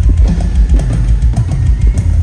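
Live rock drum kit solo, played loud: rapid bass drum strokes under a stream of drum hits.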